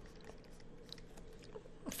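Faint room tone with a steady low hum and a few soft small clicks, then a short mouth or breath sound near the end.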